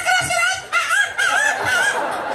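A high, drawn-out vocal cry over a stage microphone, held steady at first and then wavering up and down in pitch in its second half.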